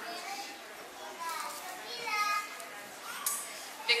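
Young children's high voices chattering and calling out, one child's voice heard clearly about two seconds in.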